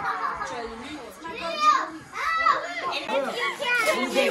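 Children's and adults' voices talking and calling out over one another, too mixed to make out words.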